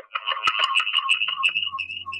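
Screwdriver tip scratching and tapping at the microphone of a homemade SIM800 call-in listening device, heard back through the phone's speakerphone as crackling clicks over a shrill, phone-filtered chirping. About halfway through it breaks into short chirps about four a second.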